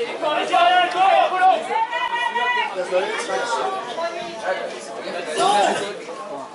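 Voices of footballers and spectators calling out and chattering during play; the words are not clear.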